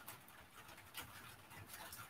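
Near silence: faint room tone over the call, with one soft brief noise about a second in.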